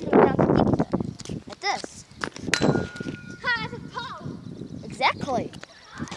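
A child's voice in short bursts of talk and vocal sounds, some of them high-pitched.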